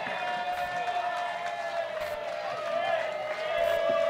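Audience voices chattering during a quiet pause between songs, over a single steady note held from the stage.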